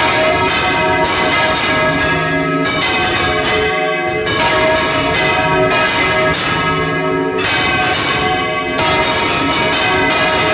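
Four church bells swung full circle on counterweighted yokes (Valencian volteig), each striking over and over in a loud, continuous, overlapping clangour heard close up from inside the belfry.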